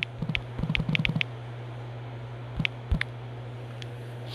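Taps on a smartphone's touchscreen keyboard: a quick run of short clicks in the first second or so, then two more about three seconds in, over a steady low hum.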